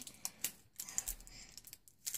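Faint, scattered light clicks and taps of hard plastic toy packaging being handled and worked open by hand.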